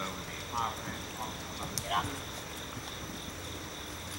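A horse cantering on turf, its hoofbeats faint, with a few short vocal calls in the first two seconds over a steady high-pitched whine.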